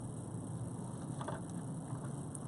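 Quiet, steady background hiss of room tone, with one faint, brief rustle about a second in.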